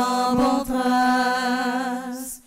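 Unaccompanied singing of a slow devotional chant. After a brief break about half a second in, the voice holds one long, steady note to the end.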